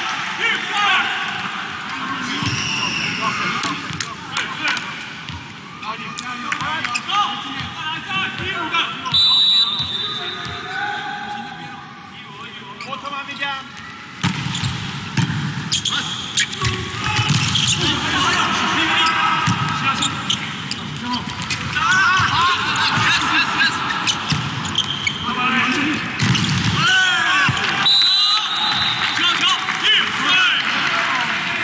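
Indoor volleyball match: a volleyball being struck and bouncing amid voices and shouts from the crowd and players. A referee's whistle sounds as a short steady high tone about nine seconds in and again near the end.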